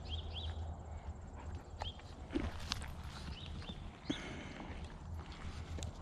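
Dogs crowding close for treats: a few faint, short, high-pitched squeaks and scattered sharp clicks over a steady low rumble.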